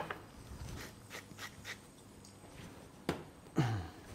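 Faint light ticks of a salt shaker being shaken over raw beef, followed by a sharper knock about three seconds in and a brief murmur of a man's voice near the end.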